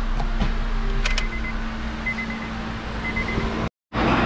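A Honda's engine idling, heard from inside the cabin as a steady low hum. About a second in a click sounds, then short high warning beeps repeat roughly once a second as the driver's door stands open.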